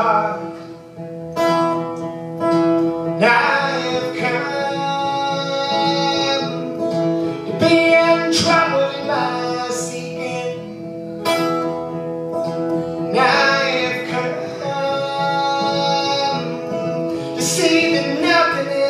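Live solo folk performance: a man singing over a strummed acoustic guitar, the voice coming in phrases over steady chords.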